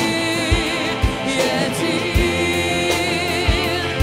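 A Russian-language Christian worship song: singing with long, wavering held notes over instrumental backing, with a few low beats.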